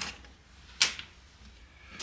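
One sharp knock about a second in, with a faint click at the start: a small hand tool set down on a wooden tabletop.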